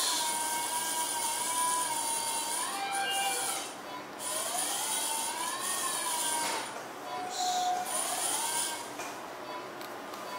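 Oertli Faros phaco machine's aspiration tone while its handpiece removes lens cortex: an electronic tone that rises in pitch as vacuum builds on the cortex and falls back as it releases, several times over, with a thin high whine alongside.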